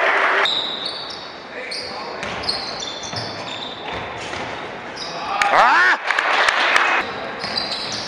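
Live basketball game sound: a ball bouncing on the hardwood court, sneakers squeaking in short high-pitched chirps, with a burst of sharper squeaks about five and a half seconds in, under players' voices.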